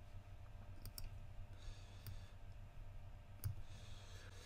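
A few faint computer-mouse clicks as elements of a diagram are selected and dragged, over quiet room noise.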